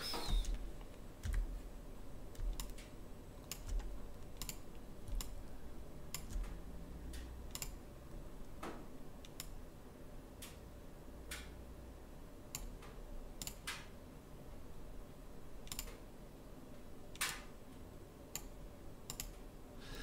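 Scattered clicks of a computer keyboard and mouse, irregular, about one or two a second, over a faint steady hum.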